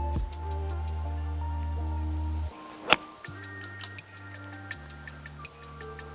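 Background music with a steady ticking beat; about three seconds in, one sharp crack of a golf iron striking the ball off the fairway turf.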